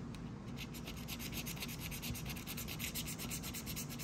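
A scratch-off lottery ticket being scratched, its coating scraped off in quick, even back-and-forth strokes starting about half a second in.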